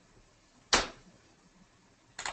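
A single sharp knock about three-quarters of a second in, dying away quickly, over faint steady hiss.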